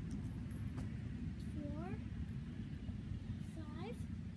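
A steady low rumble with two short rising squeaks about two seconds apart, from a backyard wooden swing set's chains and hangers.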